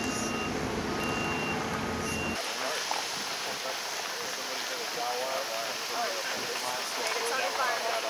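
A heavy vehicle's backup alarm beeps about once a second in two alternating tones over a diesel engine running. About two seconds in, an abrupt cut ends both, and they give way to the steady hiss of burning brush with faint distant voices.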